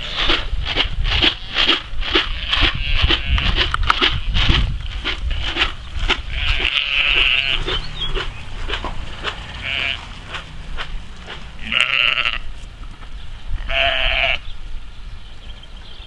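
Sheep bleating four times from about six seconds in, the first call the longest. Before the calls there is a steady rhythm of about two rustling steps a second, with wind rumbling on the microphone.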